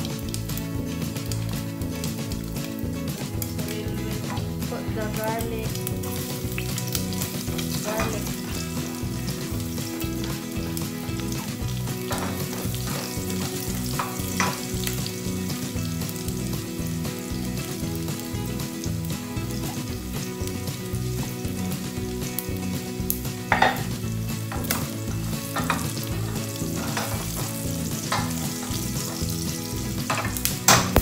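Pork fat sizzling steadily as it renders and fries in its own oil in a stainless steel pot, stirred with a wooden spoon that knocks against the pot a few times, the sharpest knock about two-thirds of the way through.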